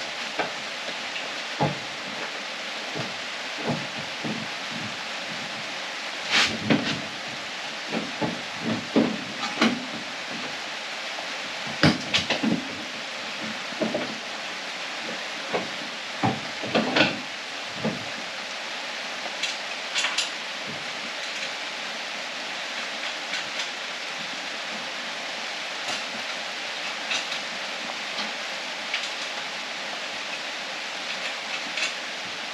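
Irregular metal clunks and knocks as a front strut assembly with its lowering coil spring is worked up into a car's strut tower, frequent for the first eighteen seconds or so, then only a few light ticks, over a steady hiss.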